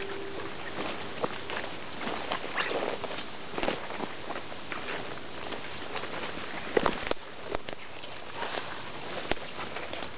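Footsteps pushing through dense woodland undergrowth: leaves and brush rustling, with twigs snapping underfoot. The loudest sharp cracks come about seven seconds in.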